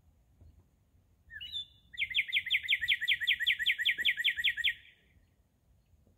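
A songbird singing: a few short introductory notes, then a fast, even trill of repeated down-slurred notes, about six a second, lasting nearly three seconds.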